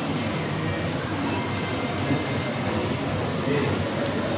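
Steady background noise, a low hum with hiss, with no distinct events.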